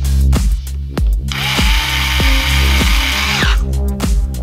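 A cordless electric screwdriver runs steadily for about two seconds, starting and stopping abruptly, as it drives a hex wheel nut onto an RC truck's wheel. Electronic dance music with heavy bass plays throughout and carries on before and after the tool.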